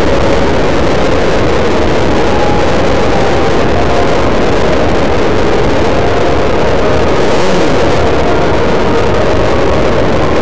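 Onboard sound of a land-speed race car running down the salt with its braking parachute out: a loud, steady rush of wind and running noise that holds even, with no clear rise or fall in pitch.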